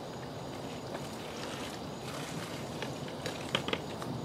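Garden hose spray nozzle running water onto a dyed uniform held over a plastic bucket, a steady hiss of spray, with a few short clicks near the end.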